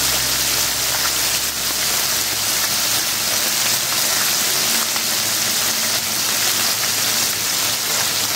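Mola carplet (mourola) fish shallow-frying in hot mustard oil in a kadai: a steady, even sizzle with fine crackling.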